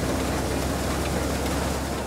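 Tractor-driven threshing machine running in the field: a steady rushing noise with a low hum beneath it.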